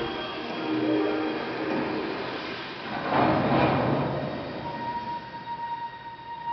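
Animated-film soundtrack of a train at a standstill, played through cinema speakers: soft music gives way to a loud noisy rush about three seconds in, followed by a single steady high tone.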